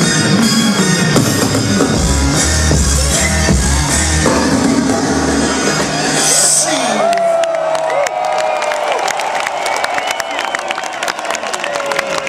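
Loud concert music with a heavy bass beat over the festival sound system, cut off about six seconds in. A crowd then cheers, shouts and whoops.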